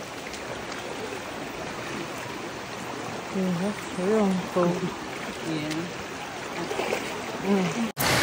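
A steady rushing noise like running water. Voices talk faintly from about three seconds in.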